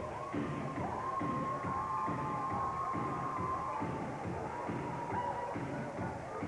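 Wrestler's entrance music playing over the hall's sound system: a beat with long held high notes that bend in pitch.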